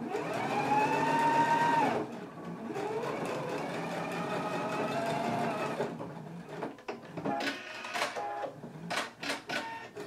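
Electric sewing machine stitching a seam. The motor whine rises as it speeds up and runs for about two seconds, eases briefly, then runs again for about three seconds; in the last few seconds it goes in short stop-start bursts of a few stitches at a time.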